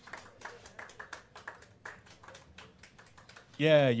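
Sparse, irregular handclaps from a small audience, with a man's voice starting over a microphone near the end.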